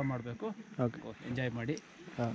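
A man's voice speaking quietly in short, broken phrases.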